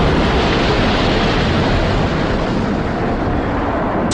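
Dramatised impact sound effect for an airliner crashing into swamp water: a loud, sustained rumbling noise that slowly eases off.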